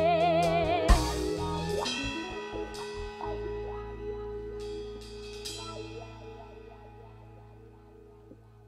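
A live band's song ending. The female singer's held note with vibrato stops on a final band hit with a cymbal crash about a second in. The last chord from keyboard, bass and cymbals then rings out and fades slowly almost to silence.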